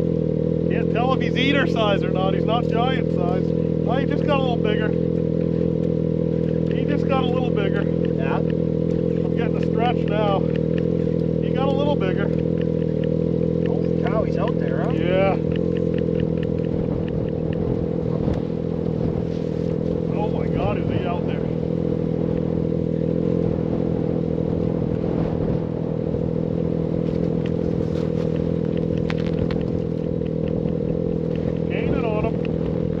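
A small engine running steadily at a constant speed, a level hum that does not change pitch, with voices talking over it for much of the first half.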